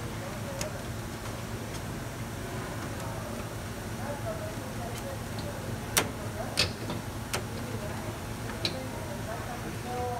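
Scattered sharp clicks and taps of plastic conveyor chain links and a pin being worked into place, over a steady low hum. The two loudest clicks come about six seconds in, just over half a second apart.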